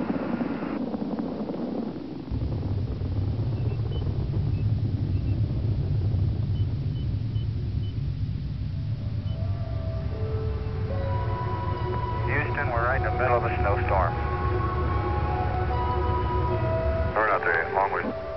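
A low, steady rumble that starts about two seconds in and stops shortly before the end. From about halfway through it is joined by sustained, music-like tones, with brief radio-style voices near the middle and the end.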